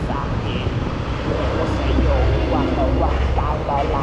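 Kymco Like 125 scooter riding on the road, its engine and a low wind rumble on the microphone running steadily, the rumble stronger from about halfway in. A voice talks over it.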